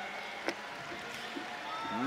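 Faint, steady background noise of a competition venue, with one short sharp click about half a second in.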